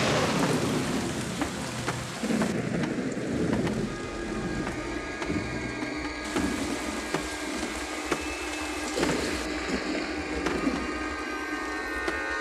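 Rolling thunder and heavy rain: a thunderclap dies away over the first couple of seconds into steady rain with low rumbles under it.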